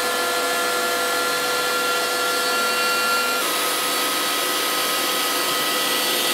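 CNC router spindle running steadily with its dust extraction while a 1/8-inch ball-nose conical bit carves a wooden nameplate: a constant whine of several tones over a hiss. The tone changes slightly about halfway through.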